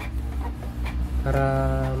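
Canon MP237 inkjet printer running as it prints a page, a steady low hum with a few faint clicks. It is printing on after a long press of Stop/Reset overrode the 'ink has run out' error.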